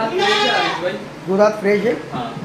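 Goat bleating: one long call in the first second, then a shorter call about a second and a half in.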